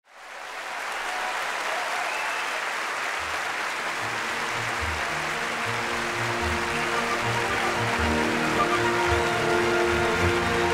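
Concert audience applause fades in, and a symphony orchestra starts playing under it about three seconds in. The orchestra plays low bass notes in an uneven rhythm beneath held chords, and the music grows fuller toward the end.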